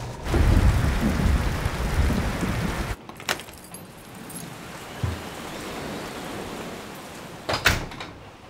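A loud, steady noisy wash with a low rumble lasts about three seconds and cuts off suddenly. A much quieter room ambience follows, with a soft low thump about five seconds in and a sharp click near the end.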